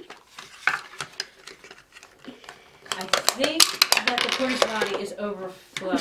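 Hard plastic toy parts clicking and clattering as a small toy toilet launcher and porta potty are pressed and handled. Voices come in from about halfway.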